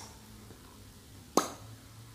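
A single short mouth pop, a tongue or lip click, about two-thirds of the way through, over faint room tone.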